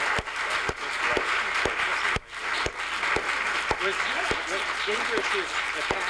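Audience applauding, with voices talking over the clapping and a regular tick about twice a second.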